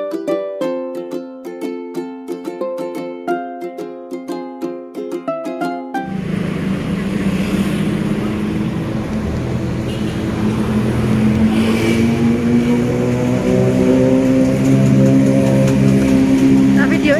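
Light plucked-string intro music, ukulele-like, for about the first six seconds, which cuts off suddenly. Then comes busy street noise with a steady engine hum that slowly grows louder.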